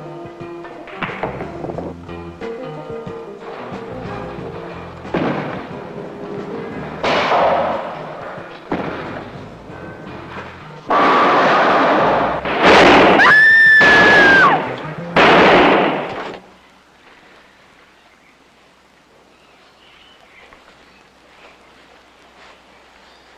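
Film soundtrack music, then a run of very loud blasts over about five seconds, with a high held tone sounding over the loudest of them. After that the sound drops suddenly to a quiet background.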